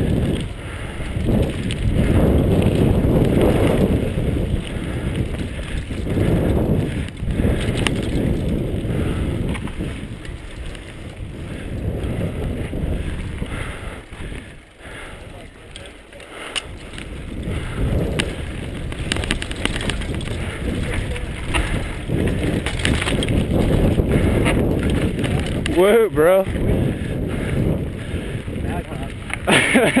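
Mountain bike ridden down a dirt singletrack, heard from the rider's camera: continuous tyre rumble and rattling over the rough trail with wind buffeting the microphone, easing off briefly midway. Near the end a short wavering high sound cuts through.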